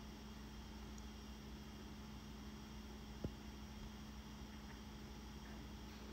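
Quiet room tone: a faint, steady electrical-sounding hum, with a single soft click a little past the middle.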